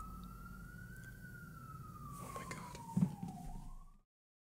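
Faint emergency-vehicle siren wailing, its pitch rising slowly, falling, and starting to rise again, with a few soft clicks and a thump about three seconds in. The sound cuts off suddenly at the end.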